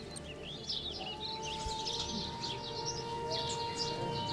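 Birds chirping and twittering, with a long held note of background music coming in about a second in.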